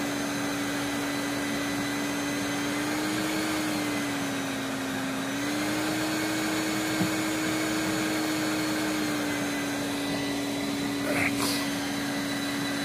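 Live bee-removal vacuum running steadily: a motor hum over rushing air. Its pitch dips slightly about four seconds in, rises again, and settles back a few seconds later.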